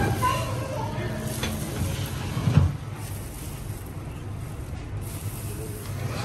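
Indistinct voices in the first second over a steady low hum, with a single sharp knock about two and a half seconds in.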